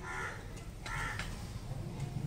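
Two short bird calls, a little under a second apart, over a steady low background rumble.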